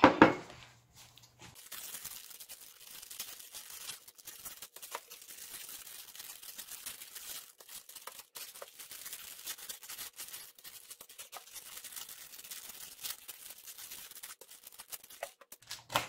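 Plastic instant-noodle packets and small foil seasoning sachets being torn open and crinkled by hand, a continuous run of small crackles and rustles.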